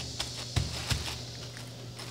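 Hand pressing and patting a ball of rice dough flat through a plastic sheet: a few soft taps and plastic crinkles, mostly in the first second or so.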